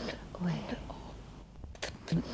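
A woman's voice performing futurist sound poetry recorded on tape: whispered, breathy fragments, a short low voiced syllable about half a second in, and sharp hissed consonants near the end.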